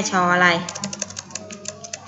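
A woman's voice for a moment, then a rapid run of computer keyboard key clicks, about eight a second, as a key is tapped over and over to delete typed text.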